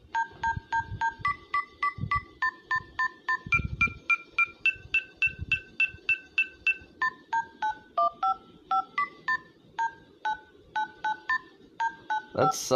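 Smartphone dial-pad key tones (DTMF): keys pressed in quick succession, about four a second. Each press is a short two-tone beep, and the beeps step up and down in pitch to pick out a tune.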